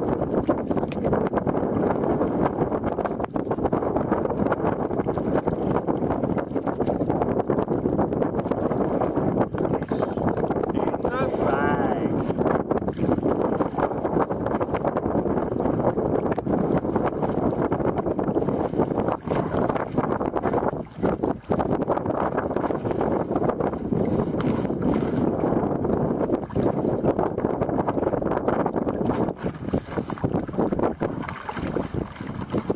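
Wind buffeting the microphone with choppy sea water lapping around a kayak: a steady, rough rushing noise with no break.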